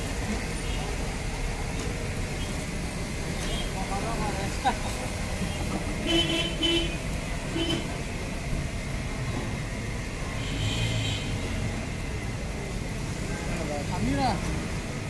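Busy street traffic with a steady engine rumble, and short vehicle horn toots a little past the middle.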